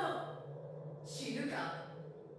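A voice trailing off, then a breathy sigh-like exhale about a second in, over a low steady hum.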